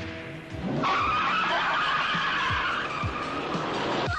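Car tyres screeching in a long skid, starting about a second in and dying away near the end, as a film sound effect over music.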